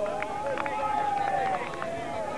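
Spectators calling out: several high-pitched voices holding long shouts at once, with a few faint knocks.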